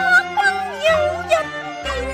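Cantonese opera singing: a female voice sings a slow, ornamented line with wavering, gliding pitch over a traditional Chinese instrumental accompaniment.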